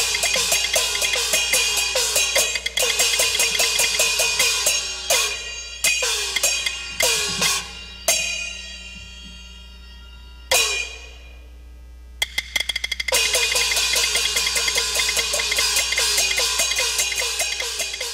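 Chinese opera percussion accompanying a Taiwanese opera stage scene: gongs and cymbals struck in a rapid, even roll. About five seconds in, the roll breaks into a few separate crashes that ring away. A quick clatter comes about twelve seconds in, and then the fast roll resumes.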